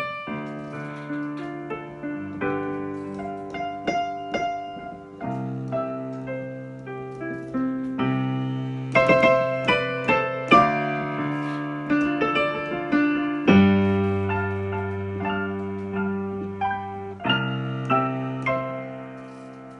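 Solo piano played on a digital stage piano: a slow melody and chords over held bass notes, the bass note changing every few seconds, with a few harder-struck chords around the middle.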